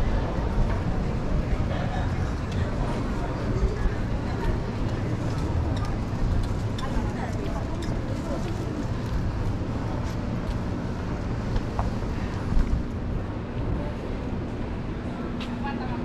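City street ambience: a steady low rumble of traffic with indistinct voices of passers-by.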